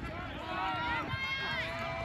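Distant, overlapping shouting voices of youth soccer players and spectators, some of them high-pitched, over a low rumble of wind on the microphone.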